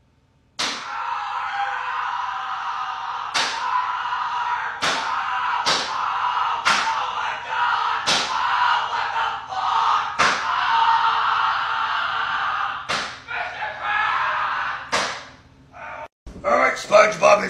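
A series of about nine sharp slap-like cracks, a second or more apart, over a continuous loud noise that starts about half a second in.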